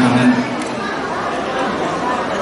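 Several people talking at once, with one voice briefly held at the very start.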